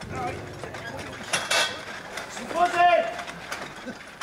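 Metal frame and legs of a marquee tent clanking and scraping as the tent is lifted and moved on its poles. A short voice call comes in between two and three seconds in.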